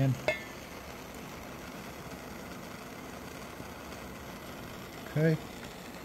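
Red-hot steel burning iron pressed into the wood of a flute's track, giving a quiet, steady sizzle as it scorches the wood to square up the track.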